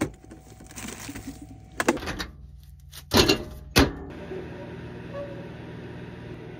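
Food being taken out of a small fridge drawer and doors being handled: rustling with a few short, sharp knocks and clicks, the loudest a little past three seconds in and near four seconds. A steady low hum follows.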